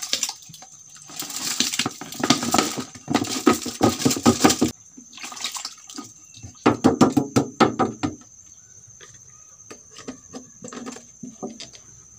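Soaked rice and its soaking water poured from a plastic tub into a bucket of liquid fertilizer mix, splashing and pattering. There is a long pour from about a second in to nearly five seconds, and a second shorter pour at about seven seconds. Soft knocks and drips follow near the end.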